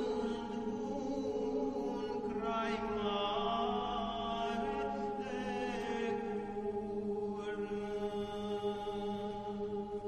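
Romanian colindă (Christmas carol) for the Three Kings sung by a vocal ensemble, slow held notes in close harmony that change chord every couple of seconds.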